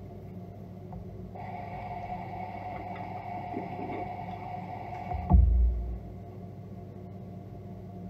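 Bathroom sink tap running water into the basin for about four seconds, cutting off abruptly with a loud, deep thump. A low steady hum runs underneath throughout.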